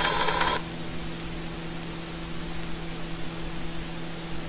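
A simulated conveyor's machine sound from factory-simulation software cuts off suddenly about half a second in. It leaves a steady low electrical hum and faint hiss.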